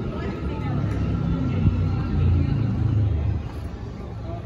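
A motor vehicle driving past on the street: its low engine rumble builds, peaks around the middle, and drops off shortly before the end, with voices of people talking in the background.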